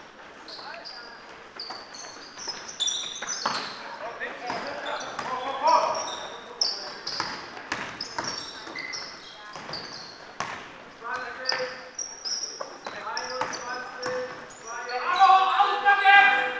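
Basketball game in a sports hall: sneakers squeaking on the court floor, the ball bouncing and players calling out, with a louder burst of shouting near the end.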